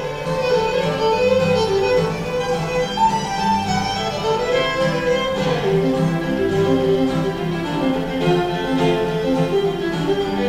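Fiddle playing a lively tune in quick, short notes over a lower accompaniment.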